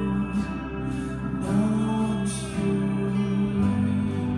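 Steel-string acoustic guitar played slowly and fingerpicked, its notes ringing into one another, with the bass note changing about three and a half seconds in.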